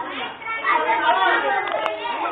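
Several children talking over one another in overlapping chatter, with one short click near the end.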